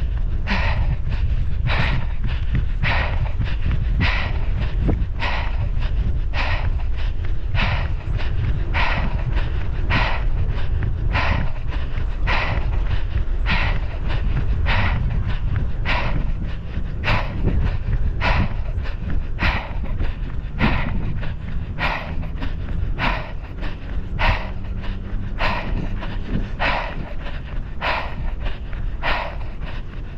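A runner panting hard and evenly while running, about one and a half breaths a second, over a steady low rumble of wind and movement on the microphone.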